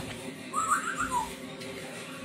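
A short whistled phrase: a few quick rising notes followed by one falling note, lasting well under a second.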